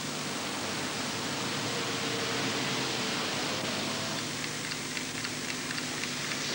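A steady hiss of background noise, with faint low hum tones under it.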